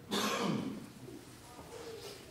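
A man clears his throat with one short, harsh cough into a handheld microphone, about half a second long and as loud as his speech.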